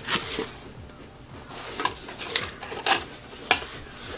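Small cardboard box being opened by hand: the flaps are pulled apart and the box handled, giving a handful of short, sharp cardboard clicks and rustles spread across the few seconds.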